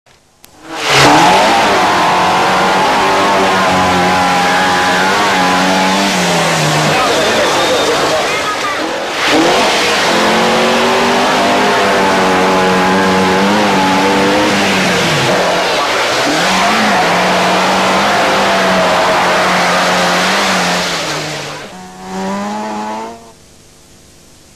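Rally car engine running hard at high revs on a gravel stage, with the revs dropping and picking up again at gear changes. A short burst of revs is heard near the end, then it cuts off.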